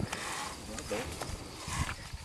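Faint, brief murmurs of voices and a few small handling clicks as a rope is fed through the wire hole of a PVC well seal.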